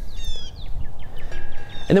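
Songbirds chirping: a run of short, sliding high notes over a steady low background rumble.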